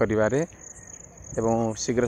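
Crickets chirring: one steady, high, finely pulsed trill that holds its pitch throughout, with voices talking over it.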